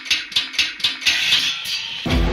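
Intro sound effects: a quick, even run of sharp scraping strokes, about five a second, followed by a short hiss near the end.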